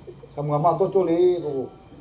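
A man's voice preaching, one spoken phrase of about a second and a half.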